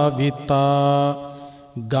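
A Buddhist monk chanting Pali verses in a slow, melodic recitation. A long note is held steadily on one pitch, trails off, and a new phrase starts near the end.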